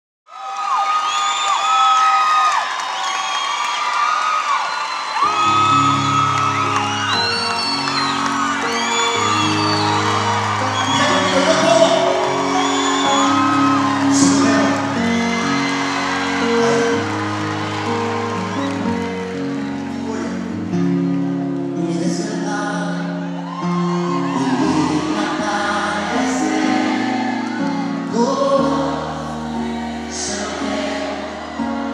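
Live Christian worship music: a male voice singing and calling out over sustained keyboard chords, which come in about five seconds in, with whoops from the audience.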